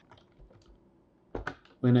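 Computer keyboard typing: a quick run of a few keystrokes about a second and a half in, entering a short terminal command.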